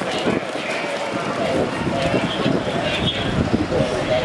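Voices of several people talking over steady outdoor street noise.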